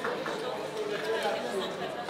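Indistinct chatter of several voices around a casino roulette table, with a few light clicks of gaming chips being handled.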